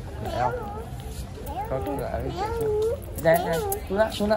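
A young child's high-pitched voice, whining and babbling in gliding, up-and-down tones, with a short adult phrase near the start.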